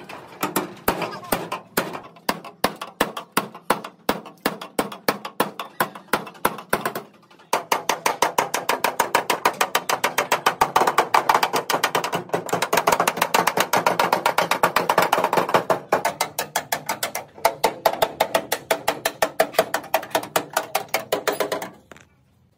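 Hand hammers striking a truck cab's sheet-steel floor and side panel, blows ringing off the metal. About three a second at first, then quickening after about seven seconds into a fast, continuous hammering that stops just before the end.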